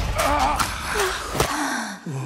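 A woman's muffled gasps and cries through a ball gag, with a sharp hit about one and a half seconds in and a falling, groaning cry near the end.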